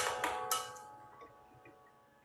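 Eggs tapped against a glass baking dish: a few sharp clicks in the first half second. Under them, background music fades out.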